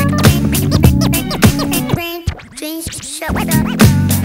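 Vinyl scratching on a turntable over a hip hop beat. About two seconds in, the beat drops out for about a second, leaving only the scratch strokes, then comes back.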